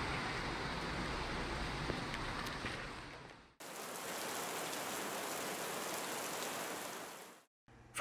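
Steady hiss of heavy rain and floodwater, with a low rumble underneath for the first three seconds or so. About three and a half seconds in, the sound cuts to a second stretch of even rain hiss without the rumble, which stops shortly before the end.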